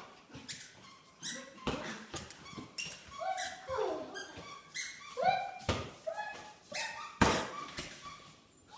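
Maltipoo puppies at play giving short, high yips and whines, several of them falling in pitch, with a few sharp knocks in between, the loudest about seven seconds in.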